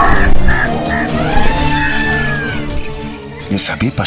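Flock of birds crying out in alarm: a few short calls, then a long arching cry that falls in pitch, over a sustained background music score.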